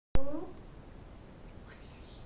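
A sharp click as the recording begins, a brief voiced sound right after it, then faint whispering in a small room.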